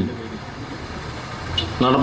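Low, steady outdoor background rumble with no clear single source, swelling briefly in the low end about a second and a half in.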